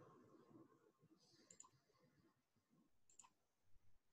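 Near silence: faint room tone with two faint, brief clicks, about a second and a half apart.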